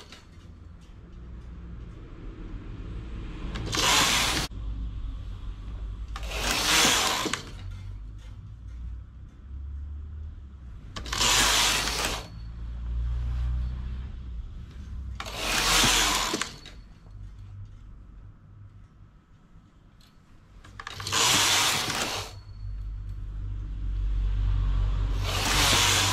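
Knitting machine carriage pushed across the needle bed six times, each pass a brief burst of sound under a second long, a few seconds apart, while short rows are knitted to shape a side flare. Quieter handling of the needles and knitting lies between the passes.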